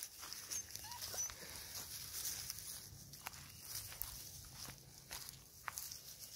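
Bull Terrier puppies, six weeks old, scuffling and pawing through dry pine needles and at tree bark, with soft scattered rustles and clicks and a few faint brief whimpers about a second in.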